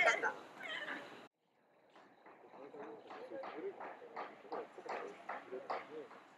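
A person's voice close by, then, after a short dropout, quiet steady footsteps on a garden path with faint voices behind.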